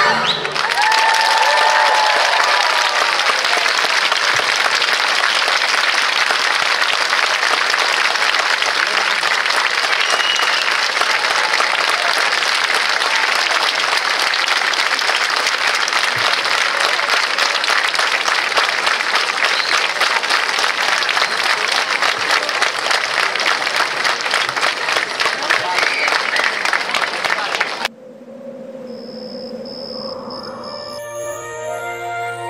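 Large audience applauding steadily for nearly half a minute, with a few voices calling out near the start. The applause cuts off suddenly near the end and soft music follows.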